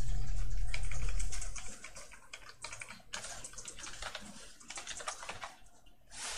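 Typing on a computer keyboard: a run of quick keystrokes as text is deleted and retyped. A low hum under the first second and a half then drops away.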